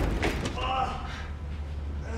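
A man's brief strained vocal sounds, grunts without words, over a low steady rumble, after a thump at the start.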